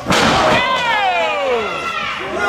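A wrestler's body slams into his opponent's with a sharp thud as he is caught in mid-air. It is followed by a long vocal cry from several voices that slides steadily down in pitch while he is hoisted onto the opponent's shoulder.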